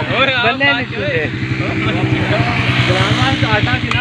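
An engine running at a steady pitch, loudest through the middle, with men's voices over it at the start and near the end.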